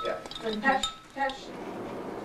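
Light clinks of glass with brief ringing, a few strokes in the first second and a half, then steady quiet room noise.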